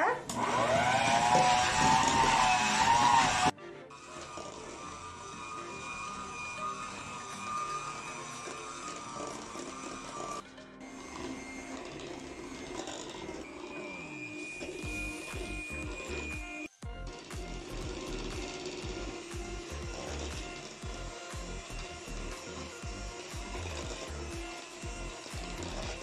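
Electric hand mixer running, its beaters whipping icy, semi-frozen evaporated milk into a foam in a stainless steel pot. The motor is loudest and wavers in pitch for the first few seconds, then cuts off abruptly to a quieter, steady whir with background music.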